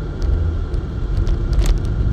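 Low, steady vehicle rumble heard inside a car's cabin.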